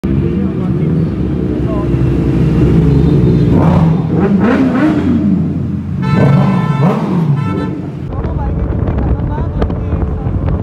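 Sport motorcycle engines running on the road, with the pitch rising and falling twice in the middle as the riders rev and roll off the throttle.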